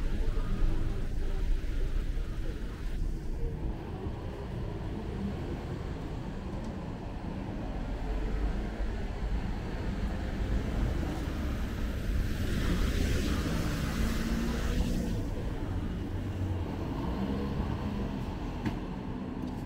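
Road traffic on a town street: a car close by at the start, its low rumble dying away over the first few seconds. Another vehicle passes with a rise of tyre hiss about twelve to fifteen seconds in.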